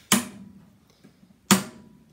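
Two sharp knocks about a second and a half apart, each ringing briefly, as a gecko enclosure's door or lid is shut.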